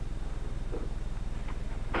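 Steady low electrical hum, with a faint soft sound of hands pressing clay about three-quarters of a second in.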